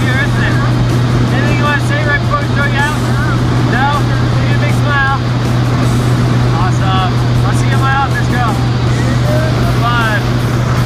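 Steady drone of a skydiving plane's engines and propellers, heard from inside the cabin in flight, with voices calling over it.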